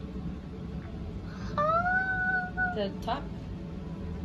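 A young girl's voice: one drawn-out high-pitched note lasting just over a second, rising slightly and then dropping at its end, followed by a short falling vocal sound.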